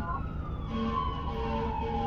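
A siren wailing, its pitch falling slowly and steadily. Steadier humming tones join under it less than a second in.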